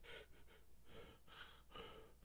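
A man crying quietly: faint, short, gasping sobbing breaths, about two a second.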